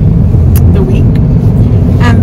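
Car cabin rumble from a moving car: a loud, steady low drone of road and engine noise heard from inside the car.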